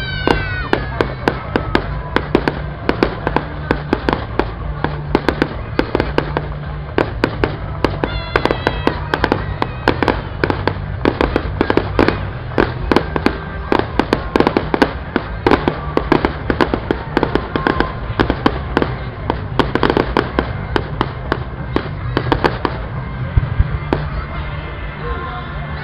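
Fireworks display: a continuous barrage of aerial shell bursts and crackling reports, several sharp bangs a second, with whistles near the start and again about eight seconds in.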